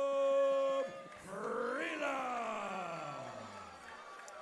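A ring announcer's drawn-out call of a fighter's name. One high note is held until just under a second in, then a second long syllable rises briefly and slides down in one long falling tone.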